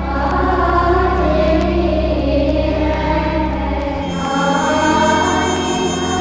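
Music: a choir singing sustained chords over held low bass notes, the harmony changing about four seconds in.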